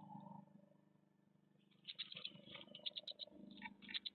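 Faint rustling and scratching of great tit nestlings shifting about in a moss-lined nest box. A soft rustle comes at the start, then from about two seconds in a rapid run of small scrapes and clicks as the chicks move and stretch their wings.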